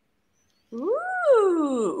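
A person's long, drawn-out "ooh" of admiration, starting under a second in, its pitch sliding up and then falling away.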